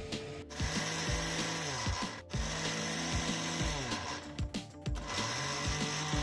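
Mixer grinder with a steel jar grinding cashews to powder in short pulses: the motor runs for a second or two at a time, stopping and starting again a few times.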